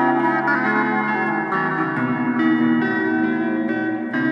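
Rock-blues guitar instrumental: held notes and chords ringing with echo, the harmony changing about a second and again two seconds in.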